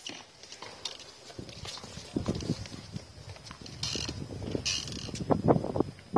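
Tennis ball bounced on a hard court before a serve: a run of short, irregular thuds that grows thickest near the end.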